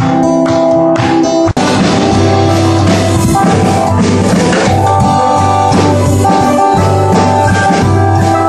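Live band playing an instrumental passage: strummed acoustic guitar and keyboard with a drum kit. The sound cuts out for an instant about a second and a half in, then comes back fuller.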